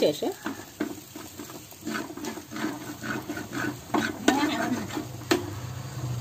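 A metal spoon stirring a wet spice paste in an earthenware clay pot, with repeated short scrapes and clicks against the pot.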